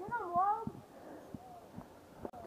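A short, wavering, wordless vocal cry lasting under a second at the start, with a few low knocks under it.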